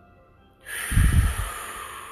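A long, forceful breath blown out through pursed lips close to the phone's microphone, starting about half a second in with the air buffeting the mic, then trailing off. Soft background music underneath.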